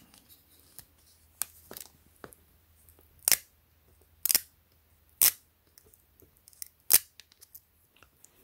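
Adhesive dust-absorber sticker being peeled from its backing and dabbed onto a smartwatch's glass screen protector: a string of short, sharp crackles and clicks, with four louder ones about a second apart from about three seconds in.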